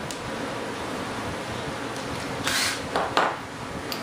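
A cordless drill bit cutting briefly into a Kevlar composite fuel tank wall, two short rasping bursts about two and a half and three seconds in, over steady workshop background noise.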